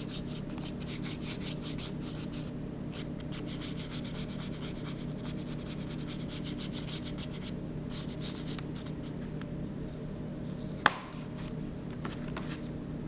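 Quick back-and-forth scratchy strokes of a colouring medium rubbed over a drawing surface, in runs of several strokes a second with brief pauses between them, over a steady low hum. A single sharp click sounds near the end.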